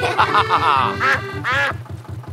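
Cartoon duck quacking twice, about a second in and again half a second later, over the steady rhythmic putt-putt of a canal narrowboat's engine and light background music.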